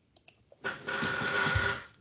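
A few faint clicks, then a burst of hissing, rustling noise about a second long that stops suddenly, picked up by an open microphone on a video call.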